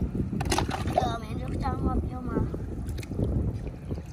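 Wet mud and shallow water sloshing as hands dig for snails, under a steady low rumble of wind on the microphone, with someone talking in short stretches.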